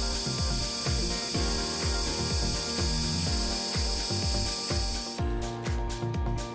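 Benchtop metal lathe taking a facing cut across a brass bar: a steady cutting hiss that stops suddenly about five seconds in, over a regular low beat about twice a second.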